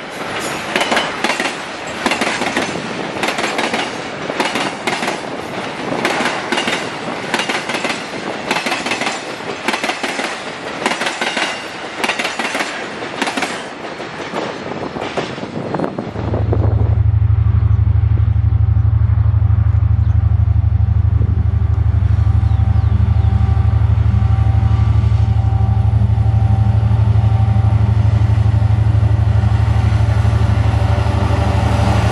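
Loaded container wagons rolling past with a rapid clickety-clack of wheels over rail joints. About halfway through, this gives way abruptly to a steady low rumble from the EMD SD39's 12-cylinder 645 diesel as the locomotive approaches.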